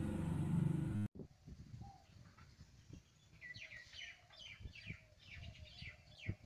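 A steady low hum that cuts off abruptly about a second in, then faint outdoor ambience with birds chirping: a run of quick, falling chirps from about three seconds in, over scattered soft low knocks.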